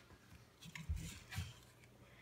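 A cat pawing at the bars of a white wooden gate: faint soft knocks with a little scratching, about a second in and again half a second later.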